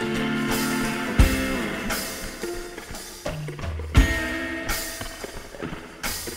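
Guitar and drum kit playing together in a loose rehearsal jam: sustained guitar chords, with two heavy kick-and-cymbal hits, about a second in and again about four seconds in.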